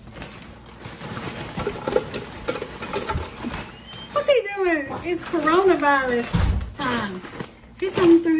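Tortilla chips poured from a crinkly plastic bag into a large metal can: dense crinkling and the rattle of chips falling and clattering against the can. About halfway through a voice starts talking over it, and a brief low thump comes near the end.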